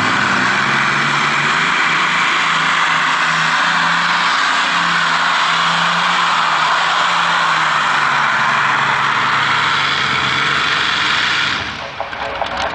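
Several Allison V12 aircraft engines of a free-class pulling tractor running at full throttle through a pull, a steady loud engine note that climbs slightly in pitch. It drops away shortly before the end as the throttle comes off at the end of the pull.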